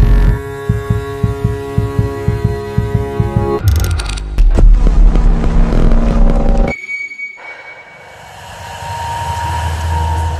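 Eerie edit music: a held chord over a throbbing low pulse, louder from about four seconds in, breaks off about seven seconds in, then a low drone swells back up toward the end.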